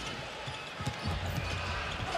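A basketball being dribbled on a hardwood court, a few bounces, over arena crowd noise, with a steady low hum coming in about a second in.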